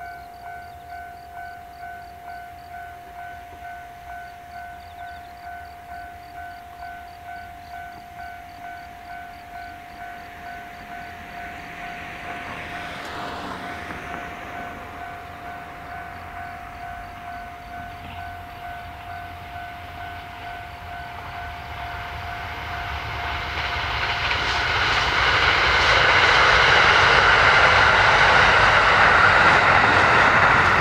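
Level crossing warning bell ringing steadily at about 1.6 strikes a second, while a Kiha 183 series diesel train approaches. The train's noise swells over the last third and drowns the bell.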